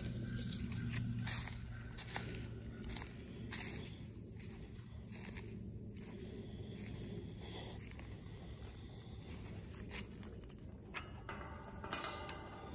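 Footsteps on dry pine needles and fallen leaves, crunching at an uneven pace, with a sharper tap about eleven seconds in.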